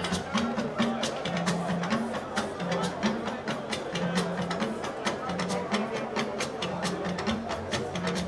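Live band music without vocals: rapid, dense percussion strokes, several a second, over a bass guitar line stepping between a few low notes.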